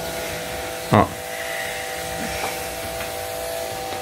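A steady electric motor buzz with a few fixed tones, unchanging throughout.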